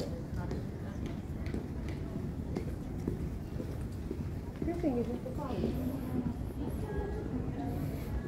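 Airport terminal hall ambience: a steady low rumble of the concourse, with scattered footsteps on the hard floor and people talking nearby, one voice clearest in the second half.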